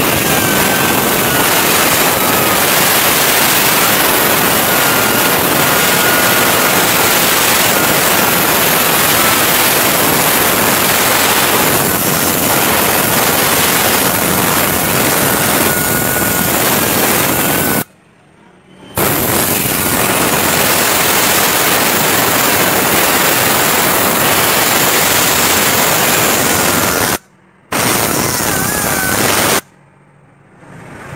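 Würth Top Gun tornado-type compressed-air cleaning gun blasting air and engine cleaner: a loud, steady rush of air with a faint high whistle through the first half. The air cuts off abruptly twice, for about a second and then for about half a second, before stopping near the end.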